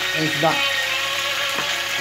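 Whole fish frying in oil in a pan, giving a steady sizzle.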